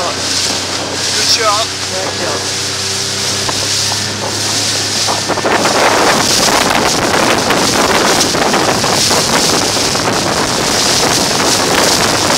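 Wind buffeting the microphone and water rushing and splashing over the steady hum of a motorboat's engine, filmed while running alongside a planing sailing skiff. The rushing gets louder about five seconds in.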